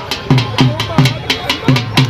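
Dhol drum beaten in a steady, fast rhythm, a deep boom on each stroke at about three beats a second.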